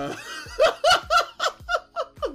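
A man laughing hard in a quick run of about six short bursts, about four a second. The commentator takes it for an insecure laugh, a way of laughing off criticism.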